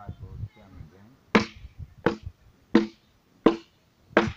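Four chopping strokes of a hand tool biting into a wooden log, evenly spaced about 0.7 s apart, each a sharp hit with a short woody ring.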